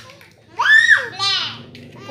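Speech only: a young child's high voice saying a couple of short words.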